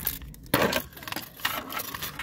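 Tape measure being pulled out and handled against the metal shock absorber mount: irregular clicks and rattles, with a sharper knock about half a second in.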